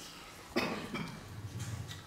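A person coughing, starting suddenly about half a second in, with a second burst near the end.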